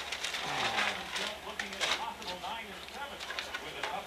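Indistinct, quiet conversation among several people in a room, over a faint steady hum.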